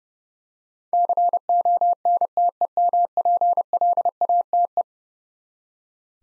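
Morse code sidetone, a steady pitch near 700 Hz, keyed in dots and dashes at 30 words per minute and spelling the word "contemplate". It starts about a second in and stops a little before the five-second mark.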